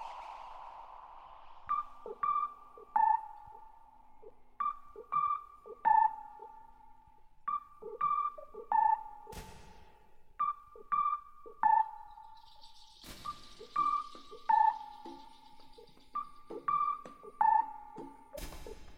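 Sparse electronic music: a held synth tone fades out, then a repeating figure of short, high synthesizer pings over soft low blips comes in, recurring about every three seconds. A brief burst of noise comes about nine seconds in, and a longer hiss starts about thirteen seconds in.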